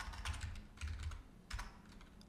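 Computer keyboard being typed on: a quick run of keystrokes in the first second, then one or two more about one and a half seconds in.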